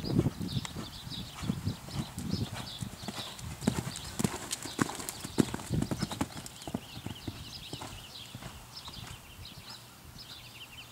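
Hoofbeats of a horse cantering on a dirt arena under a rider, a run of dull thuds that grow fainter over the last few seconds as the horse moves away.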